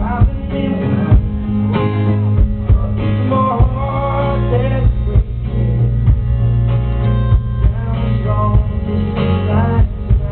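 Live band music: an acoustic guitar strummed over bass and drums, with a man singing for part of it.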